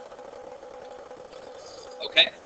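A low, steady machine hum holding a constant mid-pitched tone over faint hiss.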